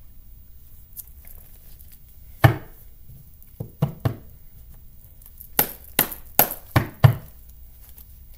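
Sharp knocks and taps of objects being handled on a tabletop: one loud knock about two and a half seconds in, a few lighter taps around four seconds, then a quicker run of five taps near the end.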